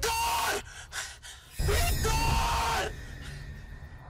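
A man screaming in anguish: two long wordless cries about a second apart, the second one longer, each over a deep rumble.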